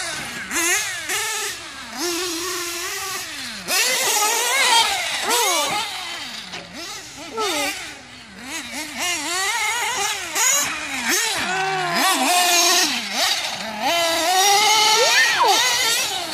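Reds R5T nitro engine in a Losi 8ight-T 3.0 1/8-scale truggy, revving up and down with the throttle as it is driven round a dirt track, its high whine rising and falling every second or so. The tune is still rich.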